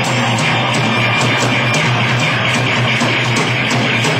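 Live rock band playing an instrumental passage with no vocals: loud electric guitar over bass and drums, with a steady beat about four times a second.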